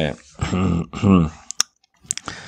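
A man's voice in short spoken bursts, then two sharp clicks about a second and a half in.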